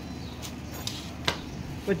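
A few faint, sharp metal clicks of hand tools being handled at the motorcycle engine, with speech starting near the end.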